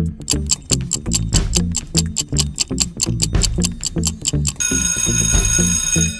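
Quiz countdown timer sound effect: a quick, steady clock ticking over a rhythmic backing beat. About four and a half seconds in, an alarm-clock bell starts ringing as time runs out.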